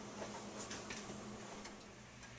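Faint, irregular ticks over a low steady hum: quiet room tone around a hot oven.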